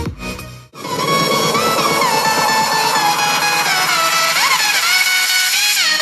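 Electronic intro music. The beat cuts out under a second in, then a stretch without bass carries gliding synth lines, and the heavy beat comes back at the very end.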